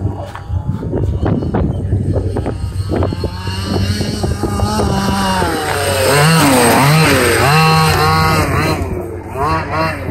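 Losi DBXL 1/5-scale RC desert buggy's two-stroke petrol engine revving up and down as it is driven over gravel. Its pitch rises and falls repeatedly through the second half, with sharp clicks in the first few seconds.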